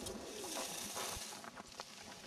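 Skis scraping and hissing over firm, packed snow through a turn, a swish that swells and then fades. A faint low wavering tone sits under it.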